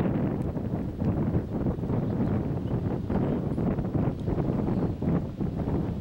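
Wind buffeting the camera microphone: a low, gusting rumble that rises and falls in strength.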